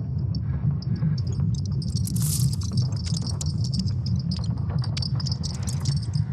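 High-pitched chirping insects, a rapid pulsing trill with scattered clicks, over a steady low hum.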